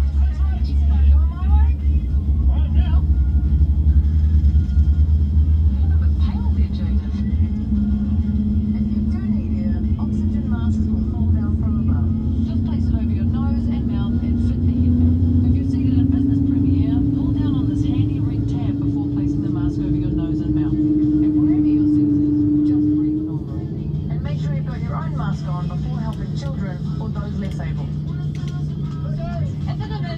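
Airliner cabin noise aboard a Boeing 787-9: a steady low rumble with a whine that slowly rises in pitch for about fifteen seconds and cuts off abruptly a little before the end. Faint voices and music from the cabin safety video play over it.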